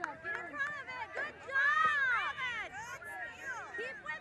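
Several high-pitched voices shouting and calling out over one another, with the loudest, long rising-and-falling shout about two seconds in.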